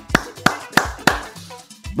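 Hand claps in a steady rhythm, about three a second, over faint background music.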